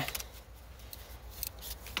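Faint handling noise: a few light metallic clicks from a small hand tool being picked up and handled, against a low steady hum.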